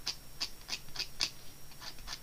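Scalpel blade scraping short, quick strokes across dried brush-pen ink on watercolour paper, about three or four scratches a second, scratching out fine lines.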